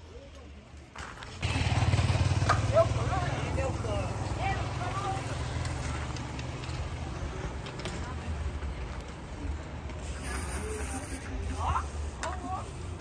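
Steady low rumble of wind buffeting the microphone while riding, starting suddenly about a second and a half in, under faint background chatter from a crowd.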